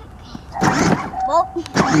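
Voices over the faint steady whine of a battery-powered Kia Soul ride-on toy car's electric motor as it drives forward under the gas pedal. The voices grow loud about half a second in.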